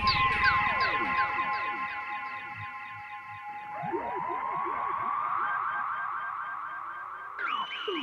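Electronic music from synthesizers: a stream of quick falling pitch sweeps over a held tone, fading down. About halfway through a new run of sweeps comes in, and shortly before the end a higher held tone begins.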